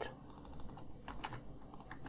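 Faint computer keyboard keystrokes, a few scattered taps clustered about a second in, as code is typed and edited.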